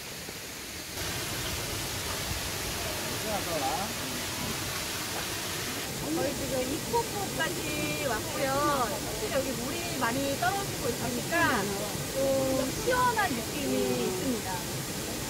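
A waterfall plunging into a rock pool: a steady rush of falling water that starts suddenly about a second in. From about six seconds a person talks over it.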